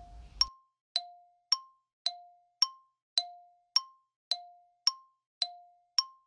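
Tick-tock countdown timer sound effect timing a quiz answer: short chime-like ticks about two a second, alternating between a lower and a higher pitch.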